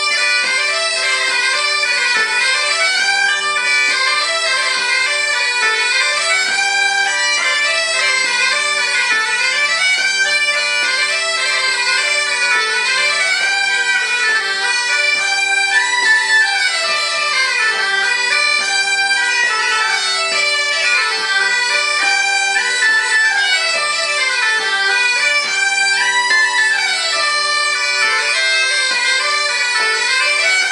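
Two French bagpipes, a 16-pouce musette du centre in G and a 20-pouce Bourbonnais pipe in D, playing a three-time bourrée together over steady drones, the chanter melody running up and down without a break.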